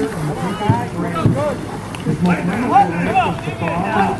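Overlapping voices of spectators calling and chattering from the bank as a two-man racing canoe is paddled hard past, with paddle strokes splashing in the water.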